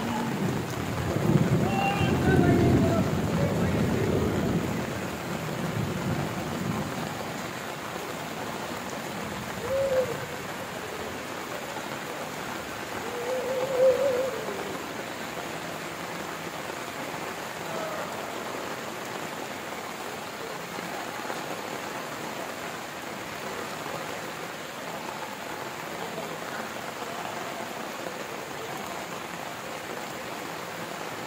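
Heavy rain pouring steadily, with a deep rumble swelling over the first few seconds.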